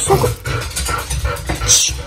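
A dog whining while food is shown, with plastic wrapping crinkling as a block of butter is handled, a sharper crinkle near the end.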